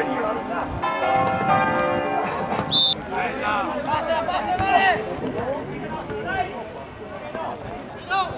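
Bells ringing over the first couple of seconds, then a short, sharp referee's whistle about three seconds in. Players' shouts and calls follow on the pitch.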